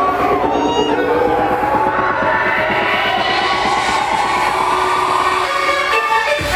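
Electronic dance music from a DJ set playing loud over a sound system, with a fast steady beat. In the second half a sound rises in pitch while the bass thins out near the end.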